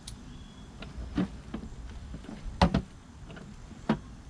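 Several sharp plastic clicks and knocks from the latch and lid of a hard Kawasaki motorcycle saddlebag being worked open by hand, the loudest pair a little past halfway.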